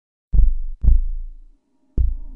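Deep, booming bass thumps from the soundtrack of a computer animation, heard as a heartbeat-like pair about half a second apart. Each thump dies away over about half a second, and a third comes in near the end.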